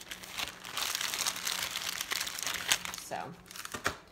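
Paper gift bag and wrapping crinkling and rustling as they are handled and filled, most of it between about one and three seconds in.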